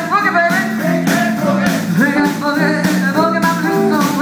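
Live blues band playing: a drum kit keeps a steady beat under guitar lines with bending notes.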